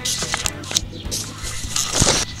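A few short scraping and rustling noises, near the start, just before a second in and again at the end, over background music.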